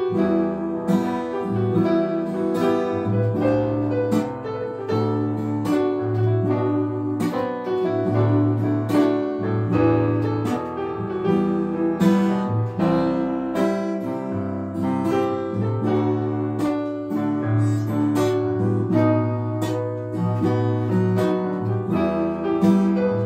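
Instrumental introduction played on an acoustic guitar and a Yamaha electronic keyboard, with no singing. Guitar notes sound over held keyboard chords and low notes.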